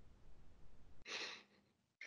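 A faint breath, a short sigh-like puff of air about a second in, over quiet microphone hiss.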